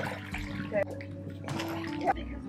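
Shallow lake water splashing and sloshing around a stand-up paddle board as it is pushed off from the shore through the shallows.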